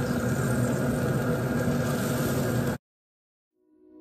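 A machine's steady hum with a constant low drone under an even hiss. It cuts off suddenly about three-quarters of the way in, leaving dead silence, and music starts to fade in at the very end.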